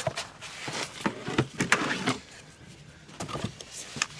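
Handling noise of a heavy plastic-cased car battery being lifted and moved: a run of scrapes, rustles and knocks in the first two seconds, then a few lighter clicks.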